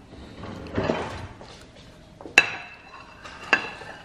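Two sharp metallic clinks about a second apart, the first the louder: a kitchen knife knocking against the metal base of a cake tin.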